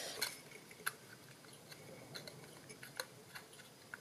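Faint handling of a strip of cardstock being slid into the slot of a Stampin' Up Classic Label Punch, paper rubbing on plastic, with a few light clicks and taps.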